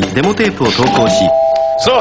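Spoken voice sample, then about a second in a two-note chime like a doorbell ding-dong, its two tones held and ringing on.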